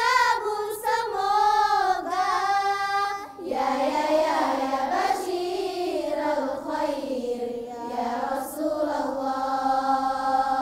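A choir of girls singing a nasheed together, voices in unison. About three seconds in the melody drops to a lower register and carries on in long held notes.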